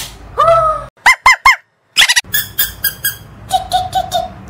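Plastic toy squeaks: a short squeak about half a second in, then three quick rising-and-falling chirps, then a run of rapid clicky squeaks, and a short held squeak near the end.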